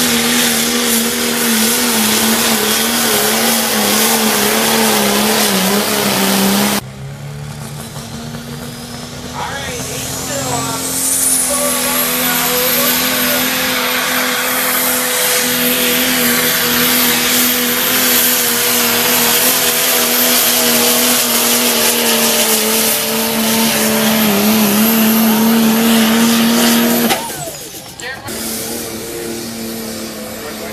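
Engine of a pulling vehicle at full throttle dragging the sled down the track, loud and steady, dropping off suddenly about seven seconds in. After a quieter spell with a rising whine, it comes back at full throttle and holds until it cuts off just before the end.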